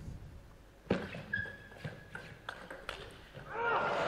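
Table tennis rally: a run of sharp, quick clicks as the celluloid ball is struck by the bats and bounces on the table, from about a second in to about three seconds in. Near the end the crowd's cheering and applause swells as the winning point ends.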